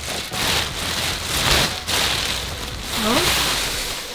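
Plastic bags and nylon sleeping bags rustling and crinkling loudly as they are gathered up and carried.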